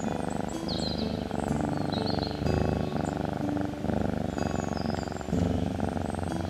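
Domestic cat purring close up, a fast rumbling purr in runs of about a second with short breaks between them.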